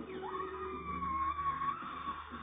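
Mr. Krabs's long, high cartoon yell of delight from the television, rising at first and then held with a slight waver.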